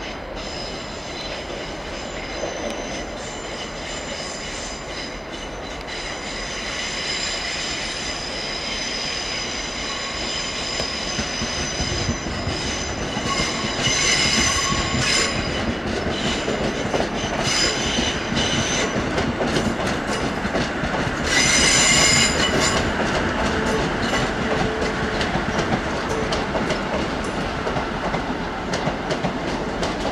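A train moving slowly through station track, its wheels squealing in a high ringing chord on the curves over a rumble of running gear and clicks over rail joints. It grows louder, peaking about halfway through and again about two-thirds of the way through, and the squeal dies away near the end.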